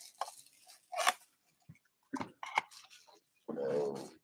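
Scattered short crinkles, taps and scrapes of a Panini Obsidian Soccer cardboard box being opened and its single foil-wrapped pack handled. Near the end there is a brief low hum-like voice sound.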